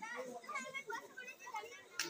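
Indistinct voices of several people talking in the background.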